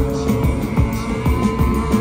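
Live rock band of electric guitar, bass and drums playing loudly, with a driving low pulse of about four beats a second under held guitar tones.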